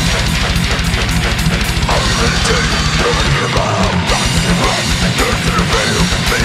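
Death metal recording: distorted down-tuned guitars over drums, with a rapid, unbroken run of kick-drum strokes.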